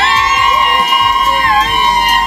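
Girls screaming in one long high-pitched shriek that wavers once in the middle, over background pop music with a steady bass.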